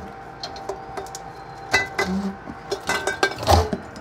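Rummaging in a freezer drawer: clinks and knocks of containers and dishes being moved, a few of them ringing briefly, over a faint steady hum.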